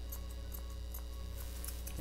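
Thinning shears snipping faintly and irregularly through a dog's head coat, a few small ticks over a steady low hum.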